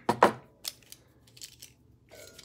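A metal wire-stripping tool clacking against a wooden bench as it is handled and set down: one sharp clack about a quarter second in, another shortly after, then a few light ticks.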